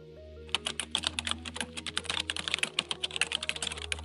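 Computer keyboard typing sound effect: rapid key clicks, about ten a second, starting about half a second in and stopping at the end, over soft background music with a stepping melody.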